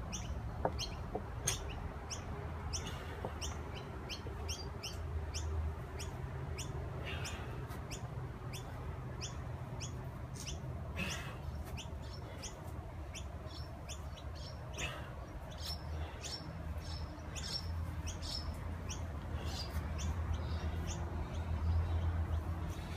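Small birds chirping over and over, short high notes a few times a second, over a steady low rumble.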